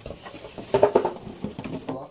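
Cardboard shipping box being handled and opened, a quick run of scrapes, taps and rustles, busiest about a second in.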